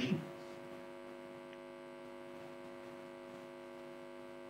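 Steady electrical hum made of several held tones, with no change through the pause, on the remote video-call audio line.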